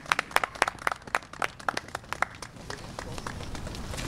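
A small group of people clapping, the claps thinning out after about two and a half seconds.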